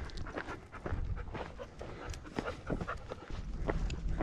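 Footsteps crunching on a dirt-and-gravel trail, several short crunches a second, with wind rumbling on the microphone.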